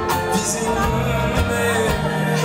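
Live band music from a pop concert, with a man singing into a microphone over the band.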